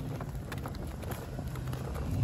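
Stroller wheels rolling over asphalt while being pushed, a low rumble with scattered small clicks and rattles from the wheels and frame.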